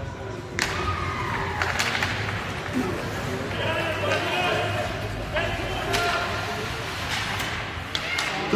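Ice hockey play echoing in an arena: sharp knocks of sticks, puck and boards come every second or two, while spectators call and shout, one voice holding a long call midway through.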